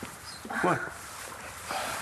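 Mobile phone ringtone playing a dog's bark, one short bark about half a second in.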